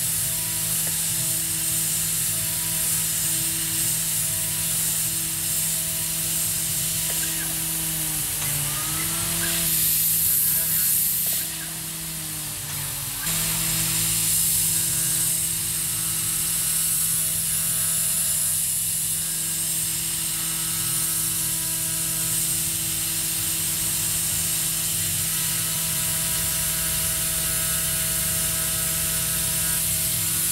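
Tormach 440 CNC mill's spindle whining steadily while a small end mill cuts a textured aluminum keychain, over a steady high hiss from the coolant nozzle. About eight seconds in, the whine bends down and wavers in pitch and the sound drops for a moment, then it settles back to the same steady tone.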